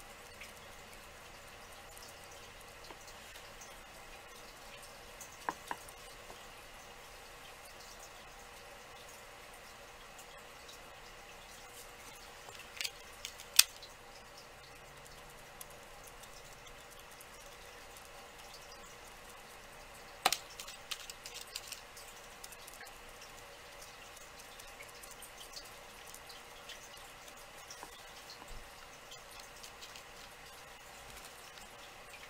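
Faint room tone broken by a few sharp small taps and clicks of craft supplies being handled, the loudest about 13 s and 20 s in, the second followed by a scatter of lighter ticks.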